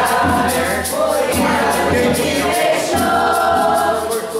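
Brazilian folk song sung by several voices to a strummed viola caipira (ten-string guitar), with a metal tube shaker and a drum keeping a steady beat of about three to four strokes a second.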